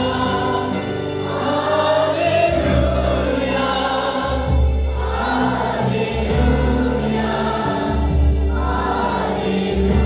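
Congregation singing a Christian worship song together, led by a man singing into a microphone, in phrases a second or two long over steady low bass notes.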